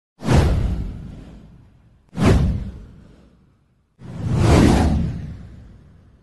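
Three whoosh sound effects of a title intro, about two seconds apart. The first two hit suddenly and fade over a second and a half; the third swells up more gradually and fades more slowly.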